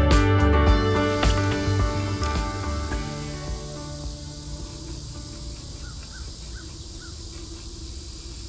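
Background music with a steady beat, fading out over the first three or four seconds. Quiet outdoor ambience follows, with a few faint high chirps.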